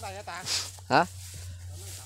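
Short bits of a man's speech in Vietnamese, including a brief loud call about a second in, over a steady low hum.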